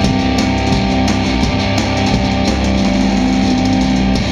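Live hardcore punk band playing: electric guitars and bass hold steady chords over a pounding drum kit, with no vocals.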